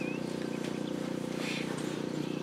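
A steady low hum with a few short, high chirps above it, typical of small birds.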